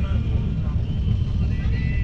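Running noise of a passenger train heard from inside a sleeper coach: a steady low rumble, with a thin high steady tone joining about three quarters of the way in.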